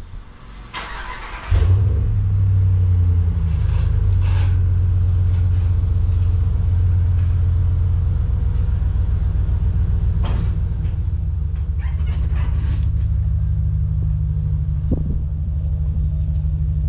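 Pickup truck engine starting about a second and a half in, then running steadily at low speed while it tows the boat trailer, with a few short clunks later on.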